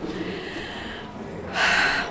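A woman's breathing during a pause in speech: a faint soft breath, then a short, clearly audible intake of breath about one and a half seconds in, as she gathers herself to go on talking.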